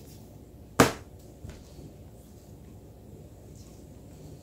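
A single sharp knock of a hard tool set down on the work table about a second in, followed by a fainter tap.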